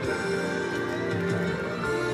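Instrumental music with sustained pitched tones playing on a car radio, heard inside the car's cabin.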